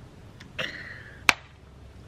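A single sharp crack about a second and a quarter in: an egg smashed against the top of a head, apparently a hard-boiled one, since it does not splatter. It follows a brief vocal sound.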